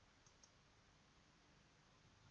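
Near silence with two faint, quick computer mouse clicks about a fifth of a second apart, a quarter of a second in.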